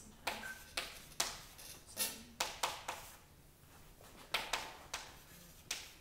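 Chalk writing on a chalkboard: a string of sharp taps and short scratchy strokes in clusters, with a pause of about a second in the middle.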